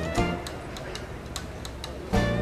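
Background film-score music: a note struck at the start, then a sparse run of light, sharp percussive ticks over a soft musical bed.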